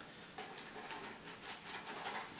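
Small white cardboard box being opened by hand: faint, irregular scratching and crackling of the paperboard flap under the fingers.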